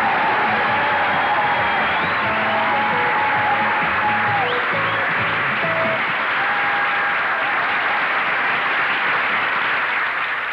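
Audience applause over stage music, the two steady together throughout; the music's low notes drop away about six seconds in while the clapping carries on.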